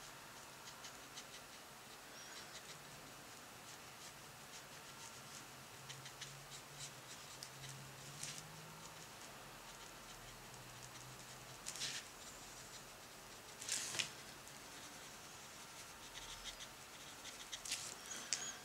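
Faint scratching and dabbing of a fine round watercolour brush on textured paper, with a few slightly louder short brush strokes in the second half.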